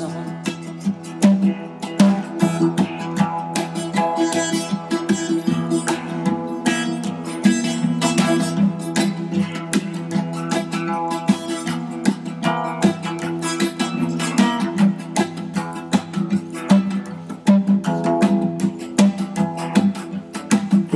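Instrumental guitar break in a folk-Americana song, with no singing: an acoustic guitar strums while an electric guitar picks a lead line of quick notes over it.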